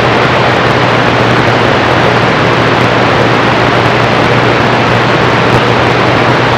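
Loud, steady hiss of band static from a CB radio's speaker as it receives between transmissions, with a low steady hum under it.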